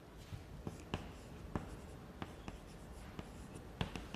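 Chalk writing on a blackboard: irregular short, sharp taps with faint scratching between them as characters are written.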